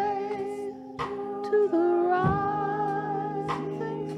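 Church organ holding sustained chords while a voice hums a slow, wavering melody over it. A soft regular beat falls about every second and a quarter.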